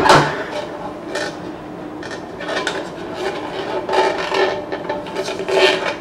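Clear plastic water reservoir of a capsule espresso machine being worked loose and lifted out by hand: plastic scraping and rubbing against the machine body, with a few light knocks.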